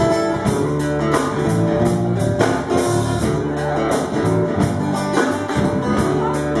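Live band playing an instrumental passage with no vocals: guitars and a drum kit, with steady drum and cymbal hits under strummed and picked guitar notes.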